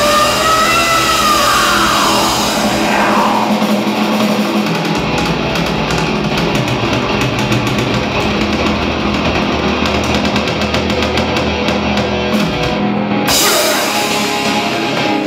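Heavy metal band playing live, loud and dense: distorted electric guitars, bass guitar and drum kit, picked up by a camera's built-in microphone. A few gliding, bending notes sound in the first seconds, and fast, rapid drumming runs through the middle.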